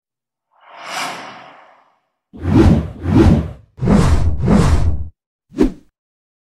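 Intro sound-effect whooshes: one swelling swoosh, then four loud whooshes in quick succession with a deep bass edge, and a short one near the end.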